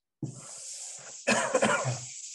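A man coughing several times in a quick burst about a second in, the loudest sound here, over a steady scratchy hiss of a chalkboard eraser wiping the board, which starts suddenly just after the beginning.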